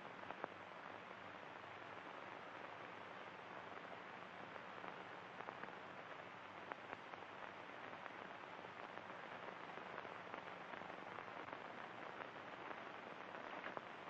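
Faint, steady hiss of an old film soundtrack, with a few weak crackles and no other sound.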